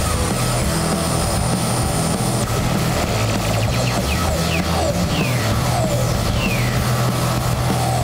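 Live band music: electric guitar, bass and drums playing on stage, with a run of short falling pitch swoops in the upper range from about three seconds in.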